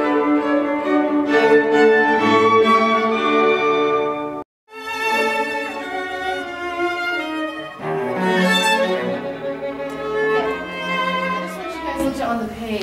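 Classical chamber music on bowed strings, violins and cello with a woodwind line, played with sustained overlapping notes. About four and a half seconds in it breaks off abruptly and a string quartet takes up a passage with long, swelling bowed notes.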